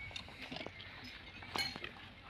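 Quiet handling sounds of a water buffalo and her calf on a rope: faint scattered knocks and rustles, with one short sharp noise about one and a half seconds in.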